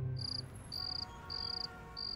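A cricket chirping in short, evenly spaced high trills, about three every two seconds, the night-time chirping laid over a moonlit night shot. Sustained music notes fade out in the first half second.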